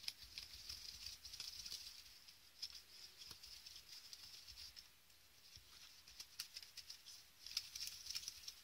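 Metal ball-tipped shaping tool rubbed in little circles into a thin pink cardstock flower to cup its petals: a faint, dry scratching and rustling of paper with many small clicks.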